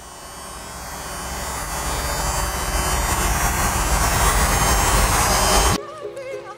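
A harsh buzzing, hissing noise that swells steadily louder over about five seconds and cuts off suddenly near the end.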